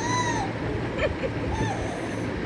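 A baby's short high-pitched squeals: one arching call at the start and a shorter one about a second and a half in.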